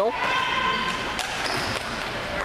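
Gym-floor game noise from a ball hockey game: sneakers squeaking high and thin on the plastic sport-court floor, with a few sharp clacks of sticks and ball, all echoing in a large hall.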